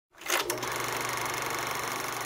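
Film-projector sound effect: a couple of clicks, then the steady, fast clatter of the projector running.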